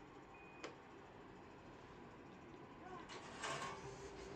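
A short high beep from a Hitachi elevator's car-panel floor button confirming the press, with a sharp click just after it. Near the end comes a louder, noisier stretch of sound.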